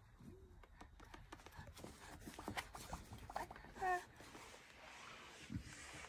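A baby gives one short coo about four seconds in, the loudest sound here, among faint scattered crinkles, taps and rustles from the plastic bubble balloon and its ribbon being handled.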